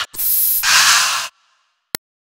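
Aerosol deodorant spray hissing in two short bursts, one straight after the other, then stopping; a single short click follows near the end.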